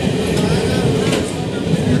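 Passenger train running along the track, heard from inside a carriage: a steady, loud rumble of the wheels and coach.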